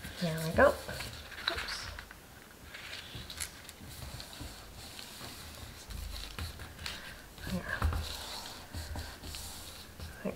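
Sheets of cardstock being handled, folded and pressed flat by hand on a cutting mat: soft paper rustles and small taps scattered through, with a short murmured vocal sound about half a second in.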